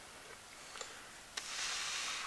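Quiet outdoor background: a soft, high rushing hiss with two faint clicks, swelling somewhat louder about a second and a half in.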